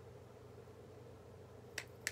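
Faint steady room hum, then one sharp click near the end.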